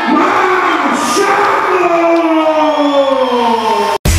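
Ring announcer's amplified voice drawing out the winner's name in one long call that falls slowly in pitch, over crowd noise.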